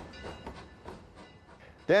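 A train rolling past on the rails as its caboose goes by, with a few faint wheel ticks. The noise fades away over the two seconds, and a man's voice cuts in at the very end.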